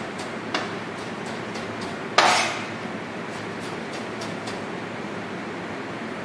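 A chef's knife rough-chopping peeled, seeded tomato on a plastic chopping board: a run of light taps of the blade on the board, with one louder knock about two seconds in.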